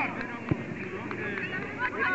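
Children's voices shouting and calling on a football pitch, with one sharp thud of a football being kicked about half a second in.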